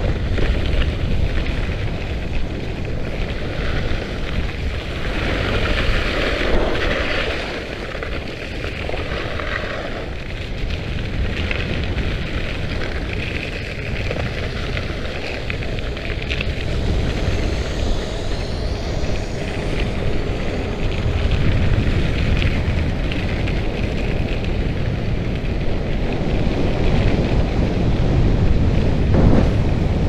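Wind buffeting the microphone over the hiss and scrape of ski edges carving across icy snow on a fast downhill run. The scraping swells and fades with each turn.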